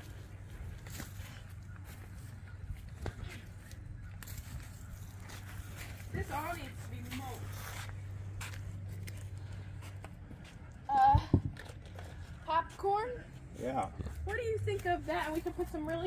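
Indistinct voices over a low steady hum with light scattered clicks and scuffs, the talking growing more frequent in the second half.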